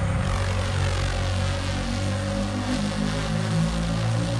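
Electronic music in a beatless passage: a sustained droning synth bass that steps between low notes under a steady higher tone and a hissing wash.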